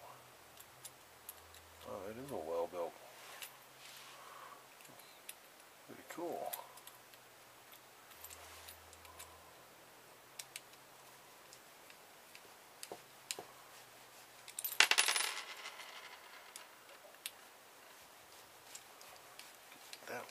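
A screwdriver working the small metal screws of a plastic electrical plug, giving scattered light metallic clicks and clinks, with a short louder metal clatter about 15 seconds in. A brief murmur of a man's voice comes twice in the first few seconds.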